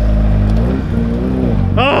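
A car engine running nearby, its pitch easing up and down a little; a man exclaims "Oh!" near the end.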